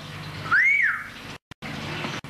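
A short whistle that rises and then falls in pitch, once. The sound then drops out completely for a moment and returns as hiss with a low hum, cutting off abruptly: a splice in an old videotape recording.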